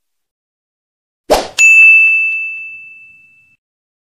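Subscribe-button animation sound effect: a brief swish about a second in, then a single bright bell ding that rings out and fades over about two seconds.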